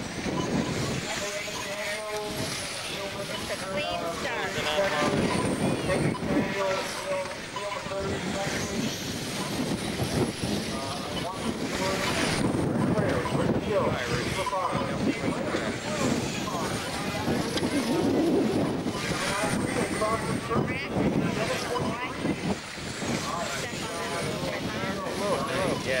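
Electric 1/10-scale RC stock cars racing on an oval, with a high motor whine that rises and falls as the cars lap, over the chatter of a crowd.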